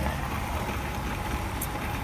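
Fuel dispenser pumping diesel into a vehicle's tank: a steady low hum with the rush of fuel flowing through the nozzle.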